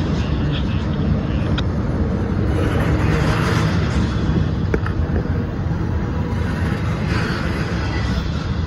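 Double-stack intermodal freight train passing close by: the loud, steady rumble and clatter of steel wheels on rail under loaded well cars. A couple of brief, sharp metallic sounds cut through about one and a half and five seconds in.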